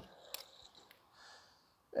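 Quiet, with a couple of faint short clicks and a soft breath through the nose.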